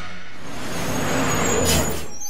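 Cartoon sound effect of a yellow school bus pulling up, with a steady engine rumble and a short air-brake hiss near the end, over faint music.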